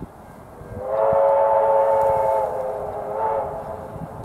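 A train whistle blown once: a long chord of several steady tones lasting about two and a half seconds, starting about a second in. It weakens partway through and swells briefly again just before it stops.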